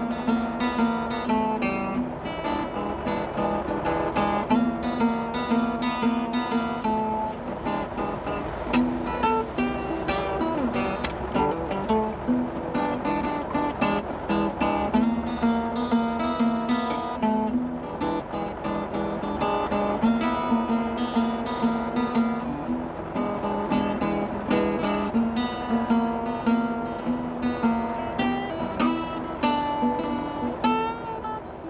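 Acoustic guitar music: steadily strummed chords with picked notes, playing without a break.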